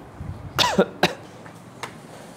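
A man coughs once, about half a second in, with a short pitched tail that falls away. A sharp click follows right after, and a fainter one near the end.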